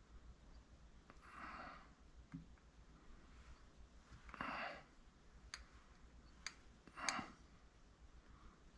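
A person breathing out three times, short breaths about three seconds apart, with a few sharp little clicks in the second half, the loudest near the end.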